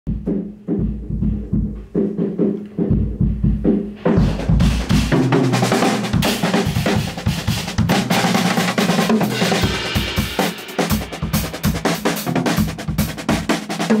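A drum kit is played to music. For about the first four seconds there is only a deep, pulsing low end with kick-drum hits. Then the full kit comes in, with busy snare strokes, rolls and cymbals over the track.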